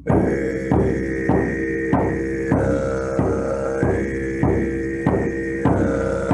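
Didgeridoo drone coming in right at the start, over a steady shamanic frame drum beating evenly about every 0.6 seconds.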